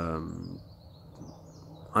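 A man's voice trailing off in a held hesitation, then a pause with faint outdoor background and faint high bird chirps. Speech starts again at the very end.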